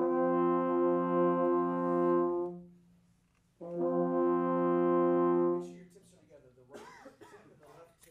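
A low brass section of a wind ensemble holds a steady sustained note twice, each about two and a half seconds long, with a break of about a second between them. A brief spoken remark follows near the end.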